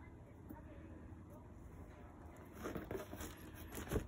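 Faint room tone, then a few short crinkling rustles in the second half as hands handle a cardboard box and the bubble wrap packed inside it.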